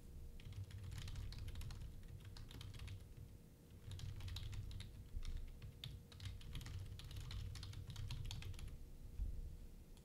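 Typing on a computer keyboard: two runs of rapid key clicks, separated by a short pause about three seconds in and stopping shortly before the end, over a faint steady hum.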